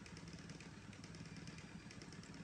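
Near silence: a faint, steady low background hum of room tone.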